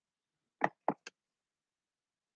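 Three quick knocks about half a second apart, the last one lighter, close to the microphone.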